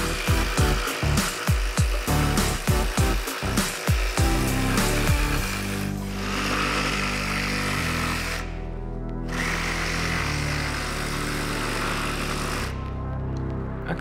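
Ryobi ONE+ HP brushless cordless jigsaw with a thin scroll blade cutting curves in plywood, stopping for a moment about two thirds of the way through and again near the end. Background music plays underneath.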